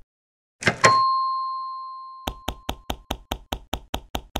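Cartoon sound effects: two quick knocks, then a bright ding that rings and fades over about two seconds. After that comes a fast, even run of about a dozen clicks, about six a second.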